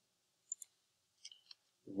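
Faint computer mouse clicks: a quick pair about half a second in and a few more about a second later, as Paste is picked from a right-click menu.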